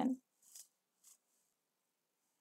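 A woman's voice finishing a word, then near quiet with two faint, brief soft sounds, about half a second and a second in.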